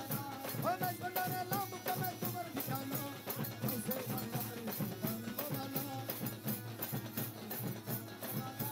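Live Maizbhandari sama devotional music: a dhol drum beaten with sticks and a harmonium melody, over a fast, even beat of high percussion strokes.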